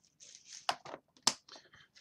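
A clear plastic parts bag being handled, crinkling and rustling, with two sharp crackles near the middle.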